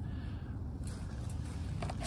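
Quiet outdoor background: a steady low rumble with a couple of faint light clicks.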